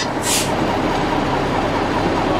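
A steel wrench scraping briefly across a cast-iron pavement cover about a quarter second in, over steady background noise.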